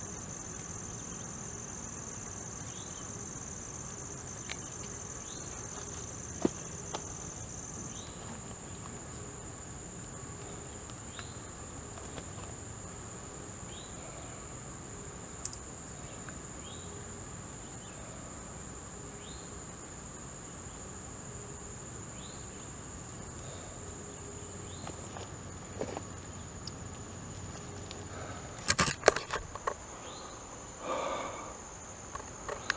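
Insects droning in a steady high-pitched buzz, with faint short chirps every second or two. A single sharp click about six seconds in and a quick cluster of sharp knocks near the end are the loudest sounds.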